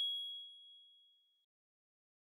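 A single bright, high ding from a logo sound sting, ringing out and fading away within about a second and a half.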